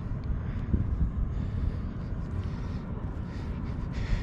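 Wind buffeting the microphone outdoors: a steady, uneven low rumble with a faint hiss above it.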